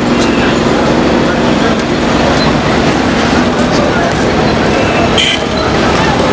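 Street noise at a busy intersection: motor traffic going by, with voices of passers-by mixed in, a steady loud din.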